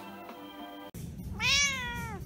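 A domestic cat meowing once, a single call about halfway in that rises and then falls in pitch.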